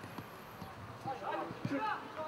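Short shouted calls from voices at a football match, mostly in the second half, with a few short knocks in between.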